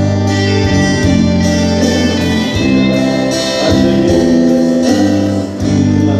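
Live church band music: guitars playing held chords over a low bass, the chord changing every second or so.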